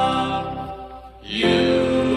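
Doo-wop vocal group singing held close-harmony chords. The first chord fades away about a second in, and a new chord swells in about a second and a half in.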